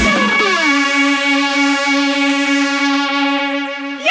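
Electronic dance music breakdown: the drums drop out and a single sustained synth note glides down in pitch, then holds steady, fading slightly near the end.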